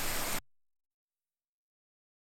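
Steady rush of a small creek and waterfall that cuts off suddenly about half a second in, followed by dead digital silence.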